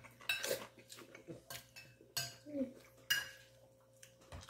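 Metal fork clinking and scraping on a porcelain plate while eating, with three sharp ringing clinks: just after the start, a little past two seconds in, and about three seconds in.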